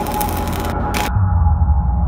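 Dark ambient intro soundtrack: a steady drone over a low rumble, cut by two short bursts of hiss in the first second, after which a deep bass rumble swells up.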